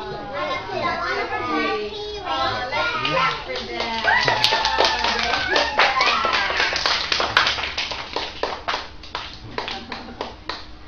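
Young children's voices singing together, joined about four seconds in by rhythmic hand clapping in time.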